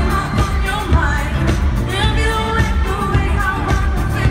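A pop song performed live by a band, with a female lead vocal sung into a microphone over a heavy bass line and a steady drum beat, heard from the audience through the venue's PA.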